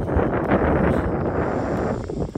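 Wind blowing across the microphone, a steady dense rush.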